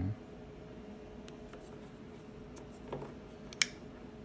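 Light fiddling and rubbing sounds from a Chris Reeve Sebenza 21 titanium frame-lock folding knife being handled, then one sharp click about three and a half seconds in as the blade is opened and locks up.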